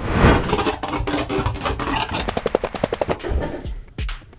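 A rapid, even run of sharp knocks and clatter, about eight to ten a second, that thins out near the end.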